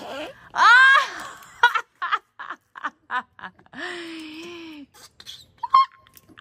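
Flarp noise putty squeezed in its cup giving a steady, raspy fart noise for about a second, starting near the two-thirds mark. Earlier a loud high squeal rises and falls, followed by short bursts of children's laughter.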